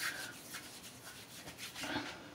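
Hands rubbing through short hair that has styling product in it: a soft, irregular scratchy rustle.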